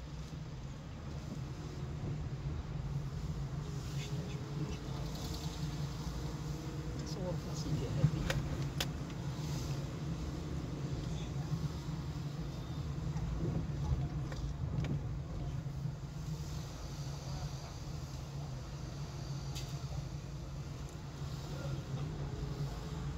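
Car engine and road noise heard from inside the cabin while driving slowly, a steady low rumble, with a sharp click about eight seconds in.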